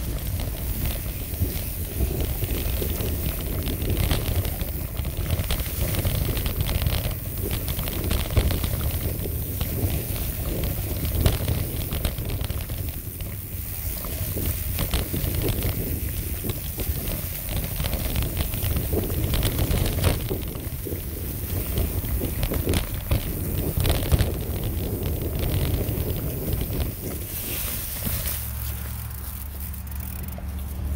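Mountain bike rolling fast over a dirt trail covered in dry leaves: wind buffeting the microphone, with the tyres crackling through the leaves and scattered clicks and knocks as the bike goes over bumps.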